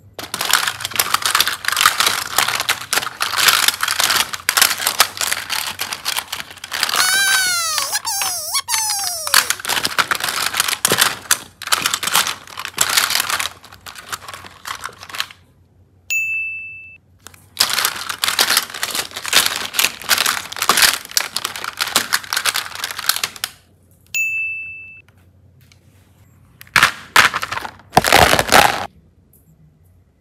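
Hard plastic toys clattering and rustling against each other as they are rummaged through in a plastic basket, in two long stretches. A run of warbling whistle tones comes about eight seconds in. A short ding sounds twice, about halfway and again near three-quarters of the way, and a few loud clacks come near the end.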